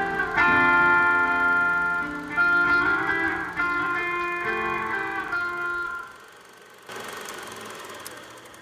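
Guitar chords ringing out and fading away as the song ends. About seven seconds in, a faint steady mechanical whirr with a low hum starts.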